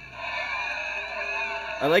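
Mostly speech: faint voices from the show playing in the background, then a man starts talking loudly near the end.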